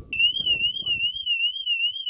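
Car alarm siren going off on the Honda Civic Type R FN2: a loud, shrill electronic tone warbling up and down about three times a second, cutting in suddenly.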